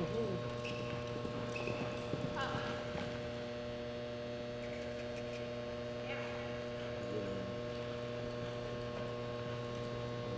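Steady electrical mains hum on the recording, with a few faint, brief voice-like sounds in the background.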